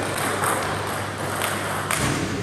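Table tennis ball clicking off bat and table as a serve is played and returned: a few sharp, short clicks, the loudest near the end, over the steady hum of a sports hall with other tables in play.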